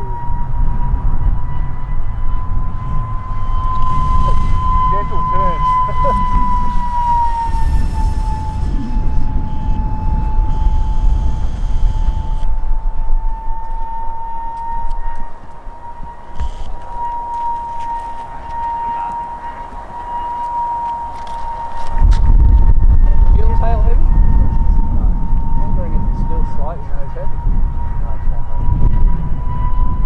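Electric ducted fan of an RC model jet whining in flight: a steady high tone that dips slightly in pitch about seven seconds in and climbs back near the end. Wind rumbles on the microphone underneath, easing off for several seconds past the middle.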